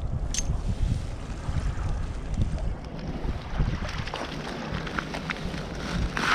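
Wind buffeting the microphone as a steady low rumble, with a few light clicks of glass shards and pebbles shifting on the foreshore.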